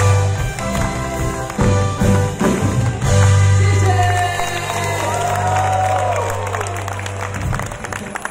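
A live band of drum kit, electric guitars and keyboard plays the closing bars of a song and ends on a long held chord that stops shortly before the end. The audience claps and cheers over the final chord.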